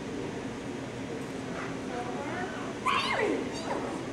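A dog gives a sudden yelp about three seconds in that slides steeply down in pitch, followed by a second fainter falling cry, over a low murmur of voices.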